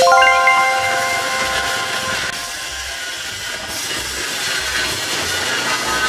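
An edited-in chime sound effect: a quick run of bright, bell-like glockenspiel notes at the very start, ringing on and fading over a second or two. Background music with a soft steady pulse carries on under it.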